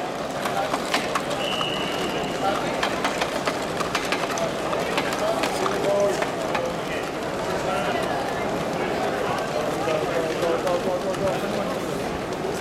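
Indistinct chatter of many voices in a busy hall, with scattered light clicks and a brief high tone about one and a half seconds in.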